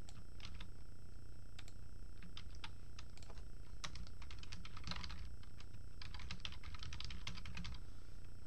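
Computer keyboard typing: scattered single keystrokes, then a fast, dense run of key clicks in the second half, over a steady low hum.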